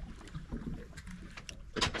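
Low steady rumble of wind and water around an open boat at sea, with a few faint ticks.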